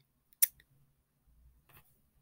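A single short, sharp click about half a second in, with a much fainter tick near the end; otherwise very quiet.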